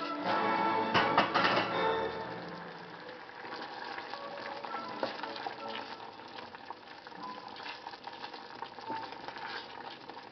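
Cream sauce simmering with a soft sizzle in a stainless steel pot while a wooden spoon stirs it, with scattered light taps and scrapes. Background music plays for the first two seconds, then fades out.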